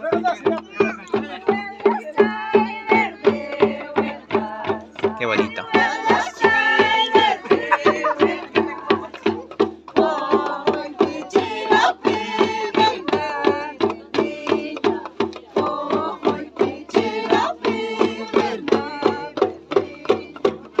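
Andean Santiago festival music: tinya hand drums beating a steady, even rhythm, women singing a high, wavering melody, and cornetas (cow-horn trumpets) holding low, steady notes underneath.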